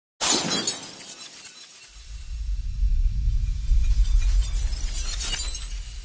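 Glass shattering: a sudden crash just after the start, its tinkling fading over about a second. A deep low rumble then swells up and holds, with another spatter of breaking-glass clicks about five seconds in.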